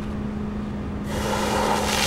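Fire hose nozzle opened: about a second in, a water jet bursts out and sprays with a loud, steady hiss, over a steady low hum.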